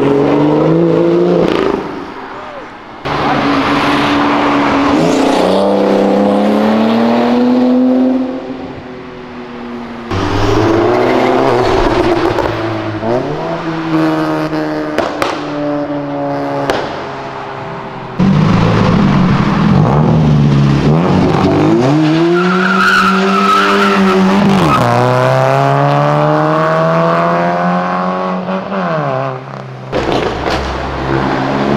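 Performance car engines revving hard as cars accelerate past, in several passes one after another. The engine pitch climbs and drops repeatedly with the gear changes, and a brief high squeal comes about two-thirds of the way through.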